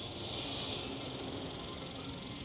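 Steady, faint background noise with no distinct event: the ambience of a workshop in a pause between speech.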